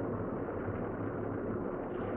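Room tone: a steady low hum and hiss.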